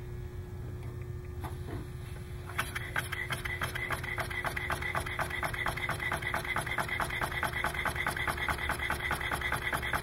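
Homemade single-cylinder, single-acting pneumatic piston engine running on compressed air. Its rotary supply valve and overhead rocker exhaust valve give a quick, even beat of clicks and exhaust puffs that starts about two and a half seconds in. It runs pretty smooth.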